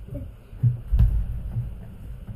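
A few dull, low thumps of handling noise, with a sharp click about a second in.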